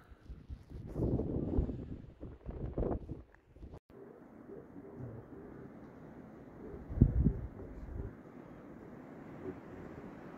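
Wind buffeting the microphone in uneven gusts, cut off suddenly about four seconds in. A steadier, duller low rush follows, with one loud thump about seven seconds in.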